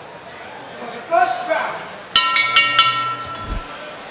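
Boxing ring bell struck about four times in quick succession, ringing out for about a second: the bell that starts round one. A single shout is heard just before it over the arena crowd's murmur.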